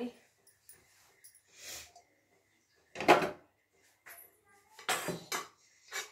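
Stainless steel pot and utensils handled at a kitchen sink: a few separate clatters and scrapes, the loudest about three seconds in.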